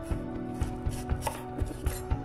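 Chef's knife slicing through a celery stalk and tapping the wooden cutting board, several cuts in quick succession.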